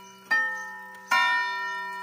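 1960 Soviet wall clock striking the hour: its hammers hit the strike twice, about 0.8 s apart, and each blow rings out and fades slowly.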